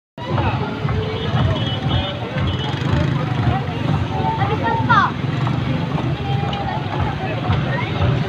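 Busy street traffic: motorcycle and vehicle engines running close by, with people talking and music in the background.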